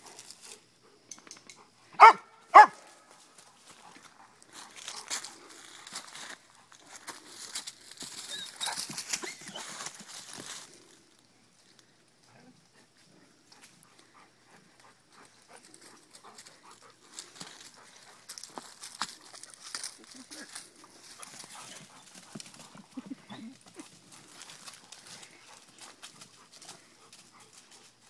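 A dog barks twice, loud and short, half a second apart, about two seconds in. After that come stretches of faint rustling and crunching in dry leaves and grass.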